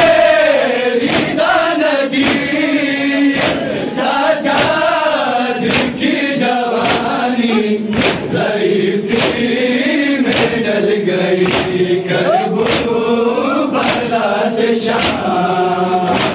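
Men's voices chanting an Urdu noha together, with the sharp slaps of hands beating on chests (matam) keeping a steady rhythm of roughly one to two strikes a second.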